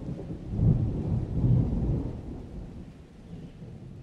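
Rolling thunder: a low rumble that surges twice in the first two seconds, then fades away.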